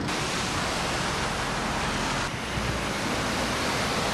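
Steady, even rushing noise of outdoor ambience with no distinct events, shifting slightly about two seconds in at a change of shot.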